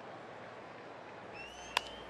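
Low stadium crowd hubbub, then a single sharp crack of a baseball bat hitting a pitch into a ground ball near the end, just after a faint high rising whistle.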